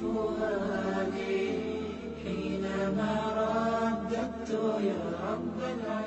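Melodic vocal chanting: a voice holds long notes that glide up and down in pitch, without a break.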